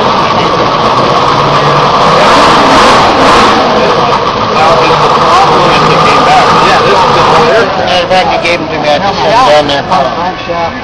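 A small motor running steadily and loudly, with people talking over it; the running stops about seven and a half seconds in.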